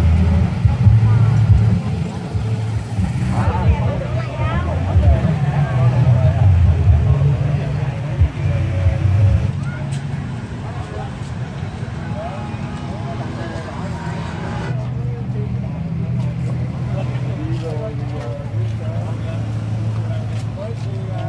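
Motorbike engines running and passing close by, mixed with people's voices chattering indistinctly. The background changes abruptly a few times.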